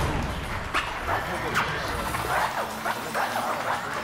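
A run of short yelping and whimpering cries like a dog's, each quickly rising and falling in pitch.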